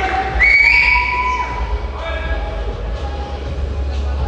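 Shrill, long-held whistles from an audience in a large hall, one starting about half a second in and rising slightly, with shouting, over a steady low bass from the posing music.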